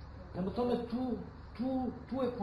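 Speech: a voice in short syllables that rise and fall in pitch, starting about half a second in, with a brief pause before the last syllables.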